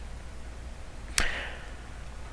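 A single sharp click about a second in, with a short fading tail, over a low steady hum.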